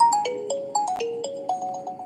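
A short electronic melody of single pure notes, about eight of them, stepping up and down in pitch and fading as it goes.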